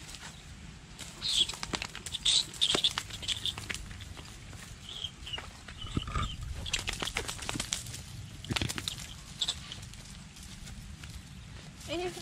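Irregular crunching and rustling of loose gravel and dry leaves as a dachshund scratches and noses about on the ground, with scattered sharp clicks that are loudest in the second and third seconds.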